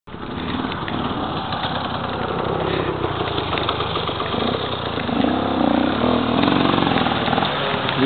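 Enduro motorcycle engine revving as the bike climbs a steep slope, with the revs rising and falling from about five seconds in.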